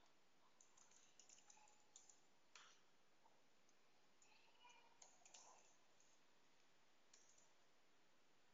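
Faint computer keyboard typing: scattered, irregular key clicks over near silence.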